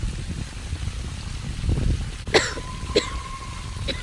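A woman coughing three times, the coughs about a second apart in the second half, over a low wind rumble on the microphone.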